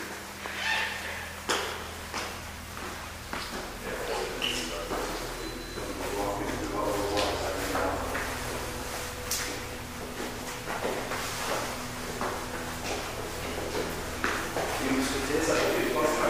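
Footsteps and scattered knocks as people climb a stairwell, with low, indistinct voices and a steady low hum underneath.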